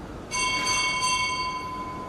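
A bell struck once, about a third of a second in. Its high overtones fade within about a second and a half, while one clear lower tone rings on.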